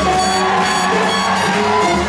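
Swing jazz music playing for Lindy hop dancing, with held melodic notes over a steady beat.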